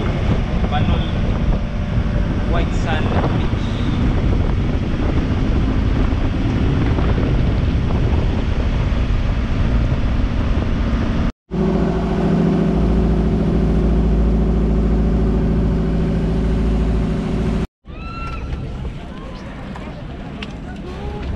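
Outrigger boat engine running steadily under way, with wind buffeting the microphone. The sound breaks off abruptly twice; between the breaks the engine's drone is steady and even, and after the second break it is quieter.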